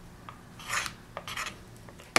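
Metal wire sculpting tool scraping on a wax feather: two short scrapes about half a second apart, with a few light clicks.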